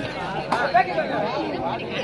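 Several voices talking over each other, with a sharp click about half a second in.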